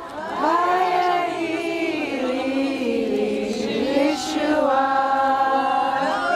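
A women's prayer group singing together unaccompanied: several voices in a chant-like melody with held and gliding notes.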